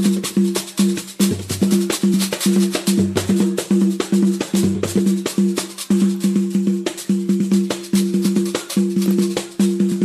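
Instrumental pagode music with no singing: a fast, steady rhythm of hand percussion over held low notes.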